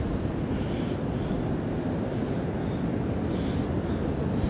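Wind buffeting the microphone, a steady low rumble with no breaks.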